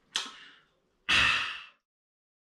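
A man breathing out after a sip of a drink: a short breath just after the start, then a louder, longer sigh about a second in that fades away.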